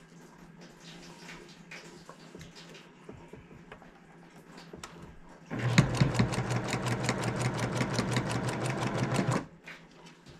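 Electric sewing machine stitching a seam: a few seconds of faint rustling of fabric, then about five and a half seconds in the machine starts and runs for about four seconds with a fast, even ticking of stitches before stopping abruptly.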